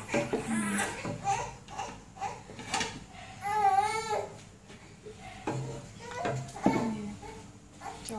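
A young child's voice, babbling off and on, with one short, high, wavering cry about halfway through.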